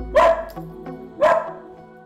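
A small curly-coated dog barking twice, about a second apart, with background music underneath.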